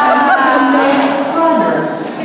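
A woman's voice speaking into a microphone, drawing out long, wavering vowels.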